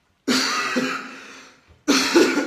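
A man coughing: a sharp cough a moment in that dies away over about a second, and a second cough near the end.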